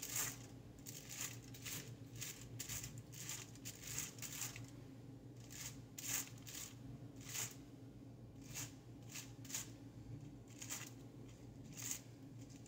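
Tint brush stroking bleach onto a section of hair laid over aluminium foil: quiet, irregular brush swishes and foil crinkles, about one or two a second, over a low steady hum.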